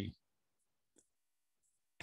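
Near silence with one faint computer mouse click about a second in, and a short burst of noise right at the end.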